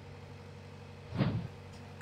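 Faint, steady low mechanical hum, with one short louder sound a little over a second in.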